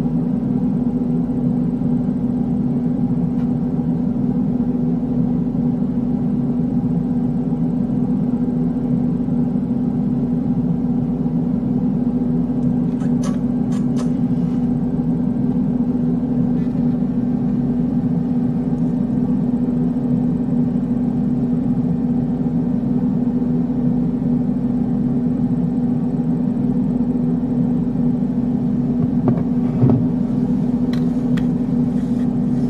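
A steady low hum at a constant level, with a few faint clicks about 13 seconds in.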